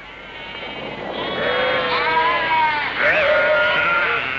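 A flock of sheep bleating, many calls overlapping; it starts faint and grows louder from about a second in.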